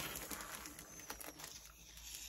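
Faint rustling and crinkling of packaging as the next item is taken out of a subscription box.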